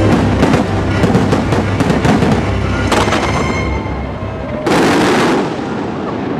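Fireworks bursting in quick succession with music playing alongside, and one louder, longer burst near the end.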